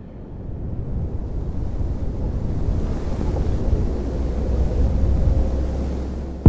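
A rushing, wind-like noise with a deep rumble underneath, growing steadily louder.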